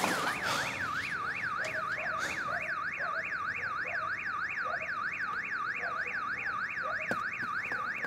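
An electronic alarm siren wailing rapidly up and down, about four sweeps a second, steady throughout.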